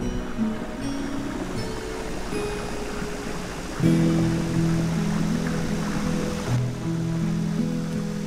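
Background music of long held notes, which get louder about four seconds in, over a steady wash of water noise.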